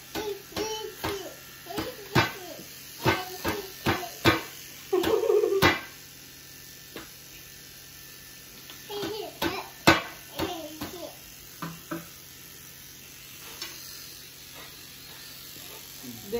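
Electric rotary shaver running with a low steady hum as it is worked over a beard. Short bursts of voice and a few sharp clicks come over it, the loudest click about ten seconds in.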